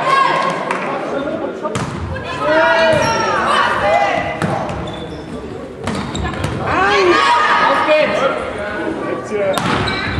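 Volleyball being struck hard in a reverberant sports hall, a sharp smack of the serve about two seconds in and further hits later in the rally, with players calling out between them.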